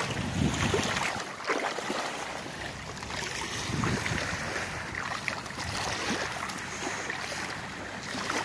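Wind buffeting the microphone in irregular low rumbles, over a steady hiss of wind and small waves at the water's edge.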